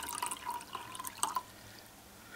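Filtered water trickling slowly from a Brita filter bottle's small outlet hole into a plastic cup, tailing off about one and a half seconds in.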